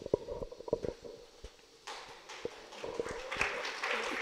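Handheld microphone being carried and handed over: a string of faint knocks, clicks and rubs from handling, with the sound cutting out briefly before the middle.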